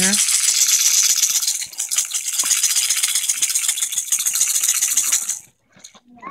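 A baby's toy rattle shaken steadily, a dense, fast rattling that stops abruptly about five and a half seconds in.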